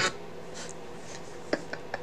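Quiet room with a run of soft, irregular clicks starting about halfway through.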